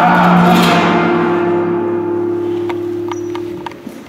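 Flamenco guitar's final chord ringing out and slowly dying away, with a few sharp clicks near the end.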